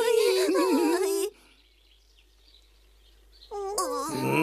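High-pitched cartoon voice crying "ai, ai" in distress, its pitch wavering. It stops about a second in, and another voice starts near the end.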